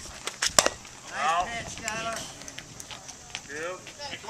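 Softball bat striking a pitched ball with a sharp crack about half a second in, followed by spectators shouting and cheering as the batter runs.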